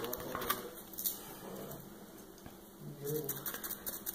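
Hands handling a fabric-covered craft pumpkin on wax paper: light taps and soft crinkling and rubbing as wet fabric is pressed down, turning to scratchier rubbing near the end as a sponge brush works Mod Podge over it.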